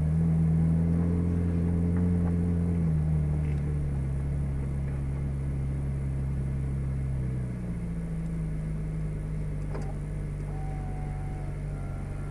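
Ferrari 458 Speciale's V8 at idle and low-speed creep, heard from inside the cabin: a steady low engine note that is a little louder for the first three seconds, then steps down about three seconds in and again near eight seconds.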